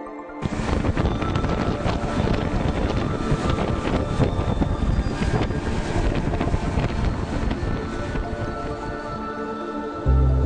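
Wind rushing over the microphone aboard a moving open boat at sea, starting abruptly about half a second in, with faint music underneath.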